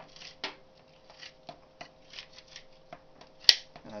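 Hand-held wire stripper's small adjustable blade scraping through wire insulation as coated copper wire is drawn through it, a string of short scratchy rasps about two a second with small clicks, and one sharp click about three and a half seconds in.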